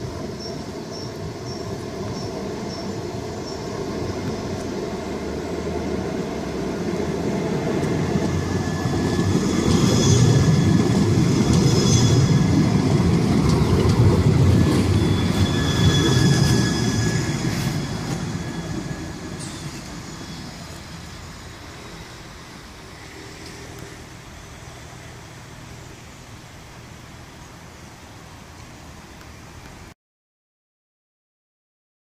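A Siemens Avenio low-floor tram running along curved track, its rumble growing louder as it approaches and passes close by, with high wheel squeal on the curve at its loudest. The sound then fades away after the tram has passed.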